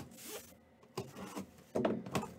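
Box cutter slicing through the packing tape on a sealed cardboard case, in several short strokes with the loudest near the end.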